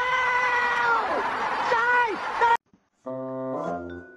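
A long drawn-out, voice-like cry held on one pitch, bending downward twice before it cuts off suddenly. After a brief gap, background music with a mallet-percussion melody.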